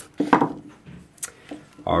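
A few light knocks and clicks of a small turned wooden piece and a screwdriver being handled against the lathe's metal chuck, the loudest knock about a quarter second in.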